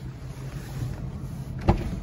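Steady low rumble inside a parked car's cabin, with one sharp knock near the end as the handheld phone bumps against the interior trim.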